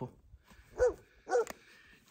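Two short, high-pitched animal calls about half a second apart, each rising and then falling in pitch.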